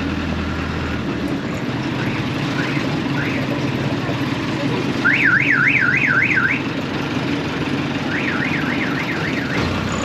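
Motor scooter running as it rolls slowly along a street, with an electronic warbling alarm sweeping up and down about four times a second; it is loudest for about a second and a half around the middle and comes back fainter near the end.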